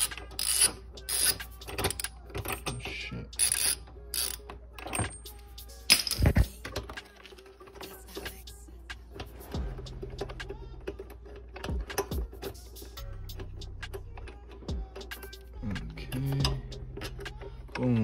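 Socket ratchet clicking in quick runs as bolts on the intake are loosened, dense for the first several seconds. After that come sparser clicks and light metal handling as the loosened bolts are turned out by hand.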